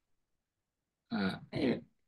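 About a second of silence, then a person's voice making two short voiced sounds, like a throat clearing just before speaking.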